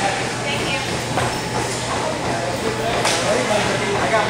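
Indistinct voices in a large room over a steady low hum, with two sharp knocks, one about a second in and one about three seconds in.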